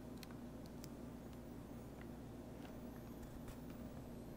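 Quiet room tone: a low steady hum with a few faint ticks, and a very faint high whine rising slowly in the second half.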